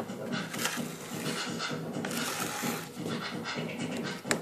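Thick grey resin paint being scraped and spread across a board with a metal rod, in uneven strokes about a second long.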